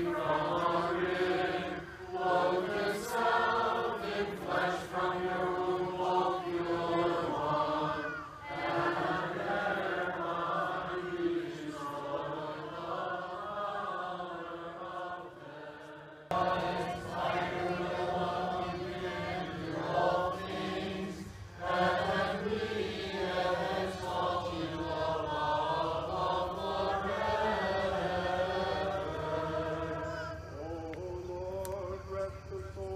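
Congregation and clergy singing a Byzantine liturgical chant together, unaccompanied, many voices on long held notes. About halfway through the singing fades briefly and then cuts back in louder.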